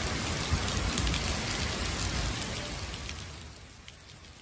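Heavy rain pouring onto a wet city street, a dense steady hiss with a low rumble under it for the first couple of seconds, gradually fading toward the end.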